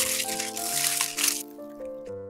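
Aluminium foil crinkling and crackling as it is folded and crimped by hand, over background music; the crinkling stops about one and a half seconds in.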